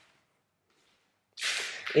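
Near silence for over a second, then a short breathy hiss near the end: a sharp in-breath just before speech resumes.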